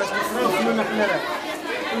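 Only speech: a man talking into an interview microphone, with chatter from people around him.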